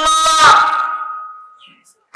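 A man's voice, amplified through microphones, holds the long drawn-out end of a chanted phrase. It then fades away with a lingering ringing tail, leaving a short near-silent pause.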